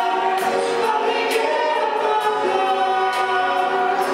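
A live rock band playing: a woman sings long held notes, with other voices in harmony, over keyboard, electric guitar and drums with repeated cymbal strikes.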